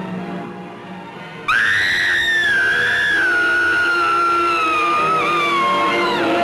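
Horror-film soundtrack music, then about one and a half seconds in a sudden, loud, long, high scream from a woman that slowly falls in pitch and breaks off near the end.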